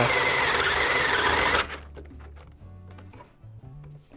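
Makita HP457D 18 V cordless hammer drill running under load as it bores into wood with a large bit: a steady motor whine that sags slightly in pitch, stopping suddenly after nearly two seconds.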